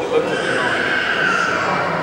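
Indistinct chatter of museum visitors, with one long high-pitched voice that rises and then falls over about a second.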